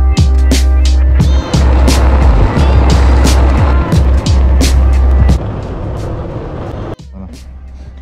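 Background music with a heavy bass and a steady drum beat. The music drops away about five seconds in, and after a sudden cut near seven seconds everything is much quieter.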